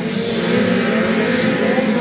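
Engines of Beetle-class autocross cars running at steady revs: a constant drone over a wash of noise.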